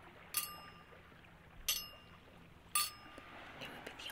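Small gold-coloured metal lidded vessel (an ornament later meant for burning incense) being clinked: its metal lid taps against the body three times, each tap ringing briefly with a bright metallic tone.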